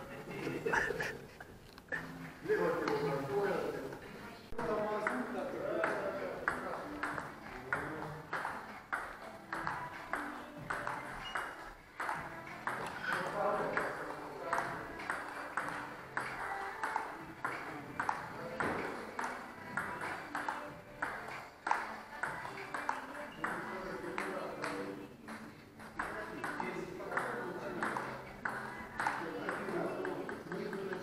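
Table tennis rally: the ball clicking off the bats and the table in a steady rhythm of about two knocks a second, during backhand strokes.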